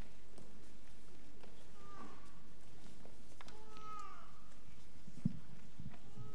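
Children's footsteps and shuffling on wooden steps as they sit down, with a few brief high-pitched child voices, each falling in pitch, and a single sharper knock about five seconds in.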